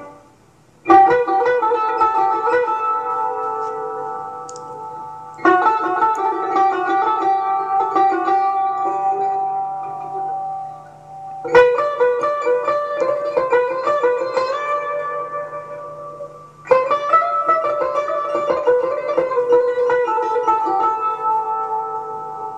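Persian tar played solo in the Mahur mode. After a brief pause it plays four phrases, each starting with a sharp plucked attack and fading away, with a low note held underneath.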